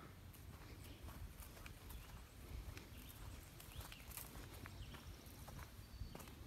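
Very faint footsteps through grass: soft, scattered ticks over a low background rumble, close to silence.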